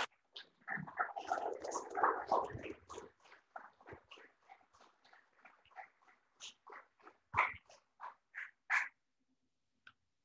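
Small audience clapping. The claps are dense at first, thin out to a few separate claps, and stop about nine seconds in.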